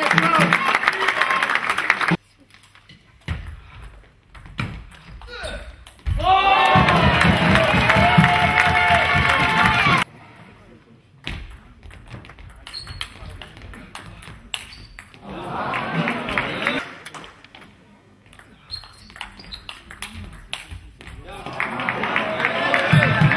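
Table tennis rally: the celluloid ball clicks sharply off the bats and table, with loud shouting and cheering from the crowd at the start and again for about four seconds in the middle.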